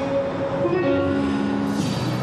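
Duck-bill whistle mouthpiece blown to carry a song's tune, in a run of held notes that step up and down in pitch.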